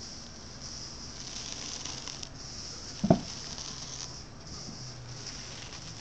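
Flexible polyurethane tile mold handled by a gloved hand: soft rubbing and rustling, then one sharp dull thump about three seconds in as the mold lands on a plywood board.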